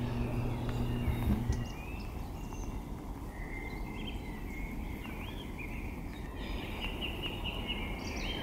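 Outdoor woodland ambience with birds chirping in short calls, more of them near the end. A low steady hum underlies the first second and a half, then stops.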